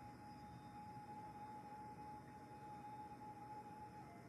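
Faint background music holding one steady tone over quiet room tone.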